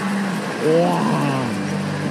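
A commentator's voice briefly heard over steady arena crowd noise.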